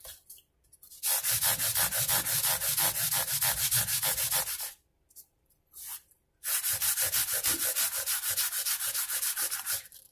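120-grit abrasive on a steel-rod crowning block scrubbed rapidly back and forth over mandolin frets, crowning them after levelling. Two long runs of quick strokes, with a pause of about two seconds in the middle.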